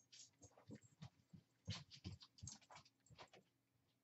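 Near silence, with faint, irregular light taps and rustles: fingers picking small metallic star confetti out of a small cup and scattering it onto glue-covered deli paper.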